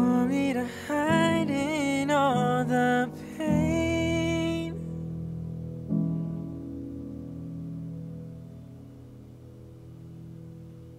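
Male vocalist singing the last phrase of a slow K-R&B ballad and holding the final note until about five seconds in. The backing chord then rings on alone and fades out as the song ends.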